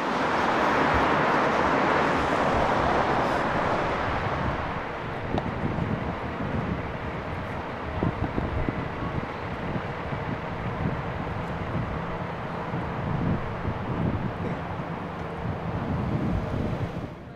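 Road traffic noise on a city street, loudest over the first few seconds, then a lower steady hum. Faint knocks come from the handheld camera being carried at a walk.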